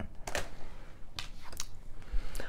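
Tarot cards being handled: a few short, crisp clicks and rustles as cards are set down and the deck is picked up.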